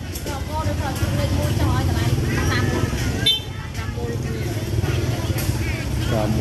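Market ambience: several people talking in the background over a steady low motor rumble from passing or idling traffic, with one brief sharp click a little past the middle.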